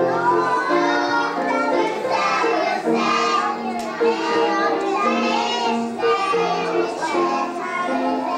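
A group of young children singing a song together on stage, with steady held notes that change pitch every second or so.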